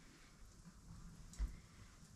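Quiet room tone with a single light knock about one and a half seconds in.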